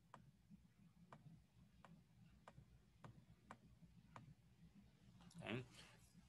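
Faint computer mouse clicks, about eight of them roughly half a second apart, as routes are clicked into a play diagram on screen; a man says "Okay" near the end.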